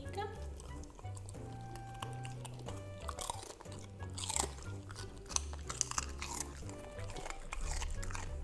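Golden retriever puppy chewing a piece of raw celery close to the microphone, with a run of crisp crunches through the middle. Background music plays underneath.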